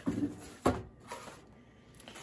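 Cardboard boxes and packaging being handled, with one sharp knock a little under a second in as a small boxed item is set down on the table.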